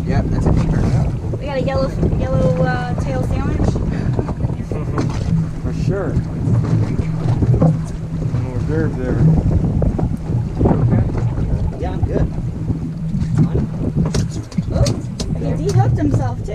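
Wind buffeting the microphone aboard a small boat, a steady low rumble, with brief muffled voices now and then.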